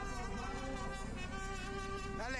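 Mariachi band playing, its violins holding a sustained chord.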